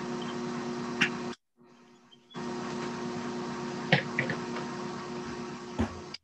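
Steady machine hum with hiss picked up by an open call microphone in a garage. It drops out for about a second near the start, and a few light clicks and knocks come through.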